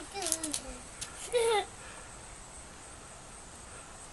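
A child's voice making a few short sounds that fall in pitch in the first second and a half, then only faint background noise.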